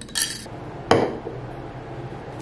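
A metal teaspoon against a glass mug of tea. There is a short scraping rattle at the start, then one loud clink about a second in.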